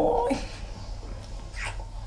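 The tail of a high, wavering, drawn-out 'aaaa' vocal squeal from a person, cut off about a third of a second in. After it there is quiet with a steady low hum and one brief soft breath near the end.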